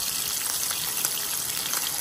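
Small whole fish (chimbolas) frying in hot oil in a pan: a steady sizzle with a few faint pops.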